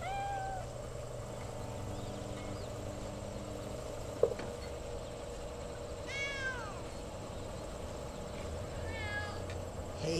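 A cat meowing three times: a short call at the start, a longer arching meow about six seconds in, and a brief one near the end. A single sharp click a little past four seconds, over a steady low hum.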